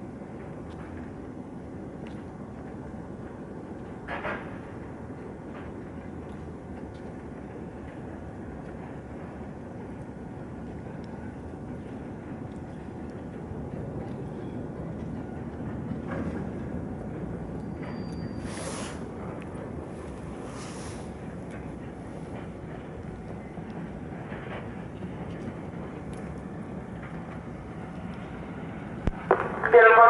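Low, steady rumble of a train in the distance, swelling a little midway, with a short click about four seconds in and two brief hisses near twenty seconds.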